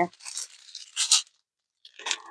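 Small plastic zip bags of diamond-painting drills crinkling as they are handled, in a few short bursts with the loudest about a second in, then a pause.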